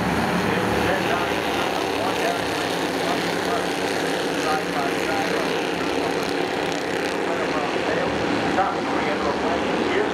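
A pack of Bandolero race cars' small engines droning steadily together as the field circles the track, with faint voices over it.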